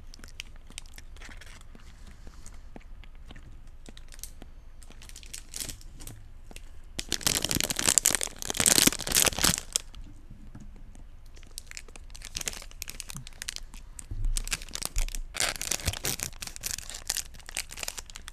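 Close-miked ASMR mouth sounds from pursed lips and tongue: runs of fast, fine clicks. They come loudest in two bursts, about seven to ten seconds in and again about fifteen to seventeen seconds in.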